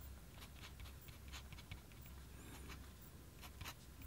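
Faint scratching of a Sailor King Profit fountain pen's nib writing on paper, in a run of short, light strokes a few times a second.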